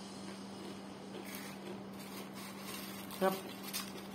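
Crispy banana chips being chewed with the mouth closed: faint, scattered crunches over a steady low hum.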